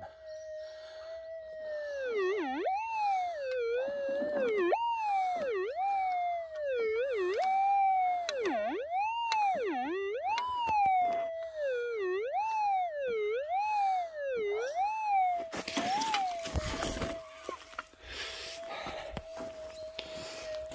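Minelab GPZ 7000 metal detector with a 12-inch Nugget Finder coil giving a steady threshold tone, then a target signal as the coil sweeps over the hole. The tone rises and falls about once a second for some fourteen seconds before settling back to the steady threshold: the target is still in the ground and very close. A short burst of scratchy noise comes near the end.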